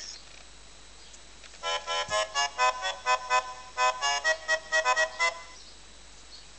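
Interactive Nok Tok plush toy's electronic sound chip playing a quick tune of short, bright notes, starting about a second and a half in and stopping near the end.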